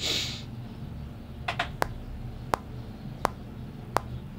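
A short rustle, then a handful of sharp, separate key clicks from the desk keyboards as the producer works at the computer, over a steady low hum.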